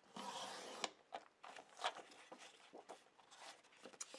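Sliding paper trimmer cutting a sheet of paper: a steady hiss for just under a second as the blade runs along the rail, ending in a click. It is followed by faint rustles and taps as the paper is handled.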